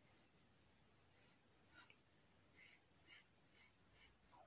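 Felt-tip sketch pen drawing on paper: a series of short, faint scratchy strokes as lines are traced.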